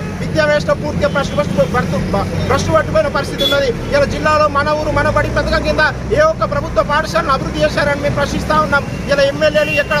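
A man speaking forcefully in Telugu throughout, over a steady low rumble of traffic that swells about halfway through.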